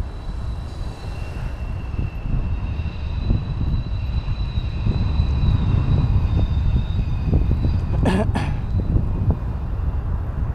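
Wind buffeting the microphone and road rumble from a ride along a street, with a faint steady high whine for several seconds in the middle. Two sharp knocks come about eight seconds in.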